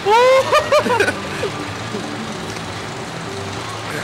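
A rider yells in rising and falling cries for about the first second, then a steady rush of wind over the microphone of the Slingshot reverse-bungee capsule as it swings.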